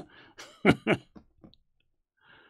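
A man chuckling softly: a handful of short breathy bursts that fade out about a second and a half in.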